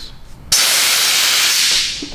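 Gas hissing out of a handheld nitrous bottle as its valve is opened. A loud, steady hiss starts suddenly about half a second in and tails off near the end.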